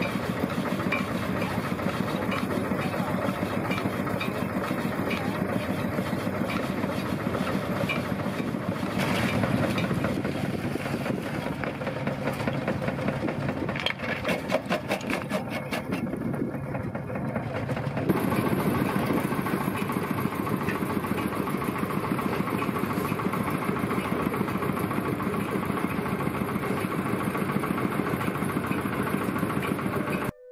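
Steady engine and machine noise. A bandsaw mill is cutting through a log, then, partway through, an old jaw stone crusher is running, with the sound changing character about halfway through.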